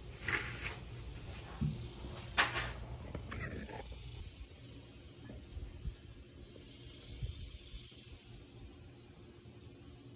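A few faint clicks and knocks in the first three seconds, then a steady faint hiss of background noise with a low hum.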